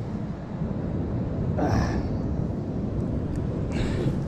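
Steady low rumble of wind buffeting the microphone, with ocean surf washing behind it. A brief, short sound breaks through just before halfway.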